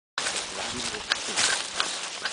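Steady rushing noise of wind and handling on a handheld camcorder's microphone, with a few sharp clicks in the second half and faint voices underneath.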